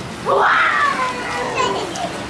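A child's loud, high-pitched call that starts about a third of a second in and slides down in pitch over about a second, over the chatter of other children at play.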